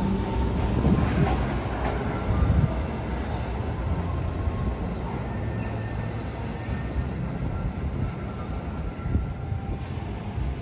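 Seattle Monorail train moving along the platform on its rubber tyres, a low rumble that is loudest for the first three seconds and then eases to a quieter, steady rumble.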